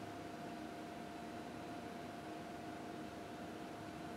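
Steady faint hiss of room tone with a thin, even hum running under it; no distinct events.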